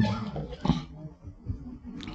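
A pause in a man's speech at a microphone: the end of his voice fades out over about half a second, followed by only a few faint short sounds before he speaks again.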